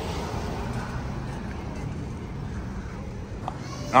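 Steady low rumble of outdoor parking-lot traffic noise, with faint voices.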